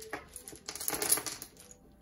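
Small hard letter dice clicking and rattling together inside a cloth pouch as it is shaken, with a few clicks at the start and a dense rattle in the middle.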